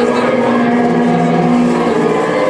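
Loud distorted electric guitars through amplifiers, holding a steady chord.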